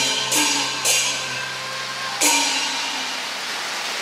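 Closing percussion of a Cantonese opera song: four cymbal crashes, the last and loudest about two and a quarter seconds in and left to ring out, ending the piece.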